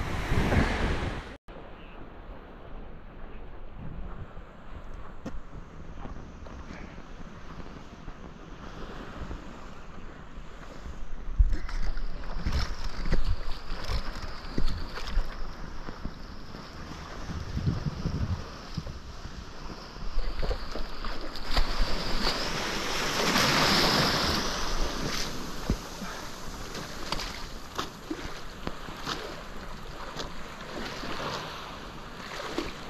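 Small waves washing on a sandy shore, with wind buffeting the microphone; the rush swells louder for a couple of seconds about two-thirds of the way through.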